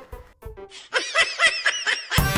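A snickering laugh, likely an edited-in comedy sound effect, starts about a second in as a quick run of high giggles.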